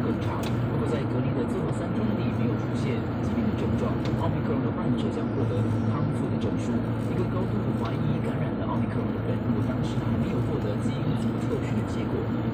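Steady road and engine rumble inside a moving car's cabin, with the car radio playing underneath.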